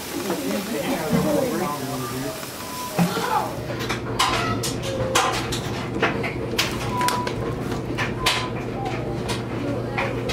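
Indistinct voices, then a run of sharp clicks and taps over a steady low hum.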